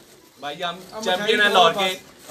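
A man's voice speaking loudly, close by, after a short pause.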